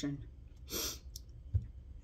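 A woman's short, audible breath in a pause between phrases, followed by a faint soft click about a second later.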